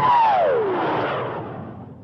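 Logo sting sound effect: a whoosh that swells and then fades away, with a tone that slides down in pitch about half a second in.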